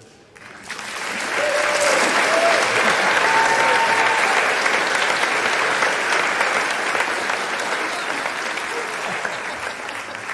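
Congregation applauding, with a few voices calling out. The clapping builds over the first couple of seconds and slowly eases off toward the end.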